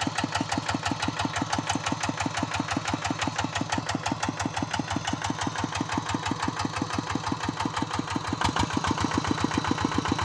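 Single-cylinder diesel engine of a Kubota-powered hand tractor idling with an even, rapid chug. It gets a little louder from about eight and a half seconds in.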